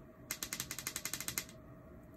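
A rapid, even run of about fifteen sharp mechanical clicks, about a dozen a second, lasting about a second, like a ratchet turning.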